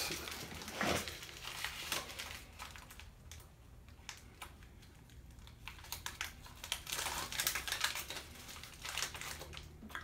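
Light crinkling and clicking handling sounds, close by, in two spells: one at the start and a longer one in the second half, with a quiet stretch between.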